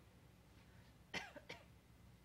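Near silence in a room, broken a little after a second in by a brief faint cough in two short parts.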